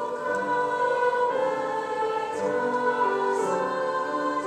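Mixed school choir singing slow, held chords.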